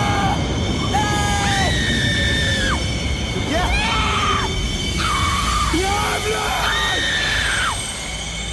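Several voices screaming in long, drawn-out cries, each held about a second and bending in pitch at the end, over a loud low rumble and music.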